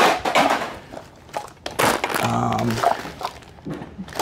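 A person laughing, then items being rummaged and shifted in a plastic storage tote, with rustling and knocking of mixed objects and plastic bags.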